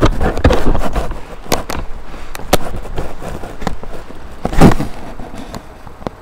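Irregular knocks, clicks and rustling, with the loudest knock about four and a half seconds in.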